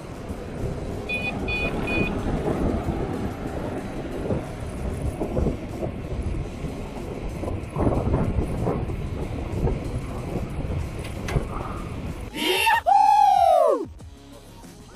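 Wind and road noise on a bike-mounted camera while cycling along a busy road, with three short high beeps about a second in. Near the end, a loud swooping sound effect.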